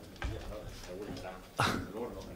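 Faint voices at first, then about one and a half seconds in a short, loud vocal sound with a steeply falling pitch.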